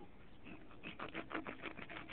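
Knife cutting the head off a bluegill on newspaper: a faint run of small clicks and crackles as the blade works through the fish.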